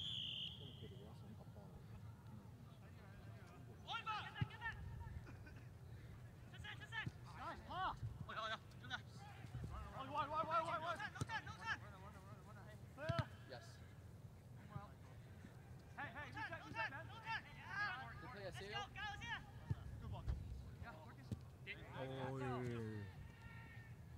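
Indistinct voices of soccer players calling out across the pitch in several bursts, over a steady low rumble. A brief high tone sounds right at the start, and a few sharp knocks are scattered through.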